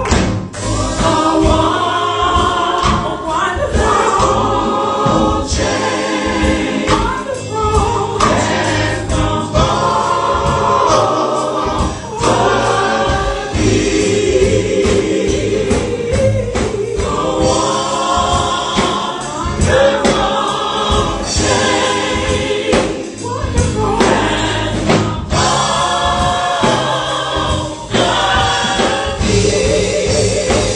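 Gospel praise team singing: a woman leads on a microphone with a group of backing singers and instrumental accompaniment, the sung phrases rising and falling over a steady beat.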